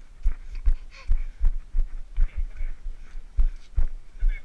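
Irregular dull thumps and knocks, about two or three a second, from a body-worn action camera being jostled as it moves.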